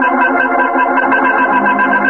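Organ music bridge between radio-drama scenes: a loud held chord with a fast, even pulse running through it.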